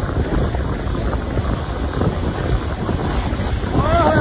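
Wind buffeting the microphone of a phone filming from a moving vehicle, over a steady rumble of road and engine noise.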